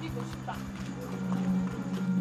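Background film music with a held low tone that swells about one and a half seconds in, over quick soft thuds of a woman's running footsteps.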